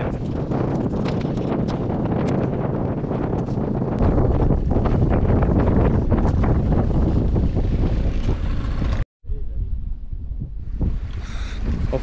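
Strong wind buffeting the microphone, a dense, rumbling rush with scattered clicks and knocks. The sound cuts out for a moment about nine seconds in, then the wind noise carries on, quieter.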